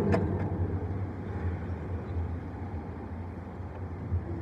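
Steady low hum and background room noise in a large, echoing church, with a sharp click and a fainter second click just after the start.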